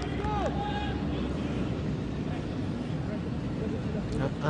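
Steady outdoor background noise on a soccer field, with faint distant voices calling out during the first second.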